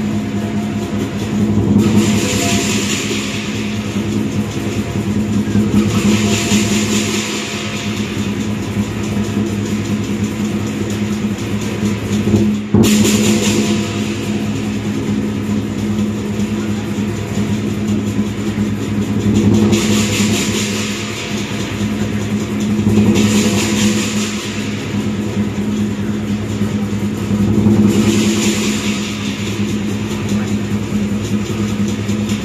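Lion dance percussion accompaniment: a large Chinese drum played in a steady rolling beat, with bursts of clashing cymbals every few seconds and one sharp hit near the middle.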